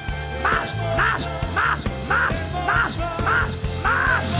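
Live church worship music with sustained low bass or keyboard notes, overlaid by short shouted vocal bursts that repeat nearly twice a second.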